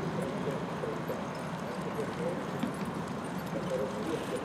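Indistinct talking over steady outdoor ambience, with the hoofbeats of a pair of horses trotting in harness on grass.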